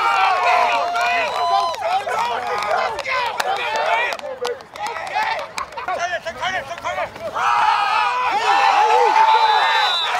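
Many men shouting and calling out over one another, players and sideline yelling during a football play, with a quieter stretch in the middle. A brief high whistle tone sounds near the end, as another tackle is made.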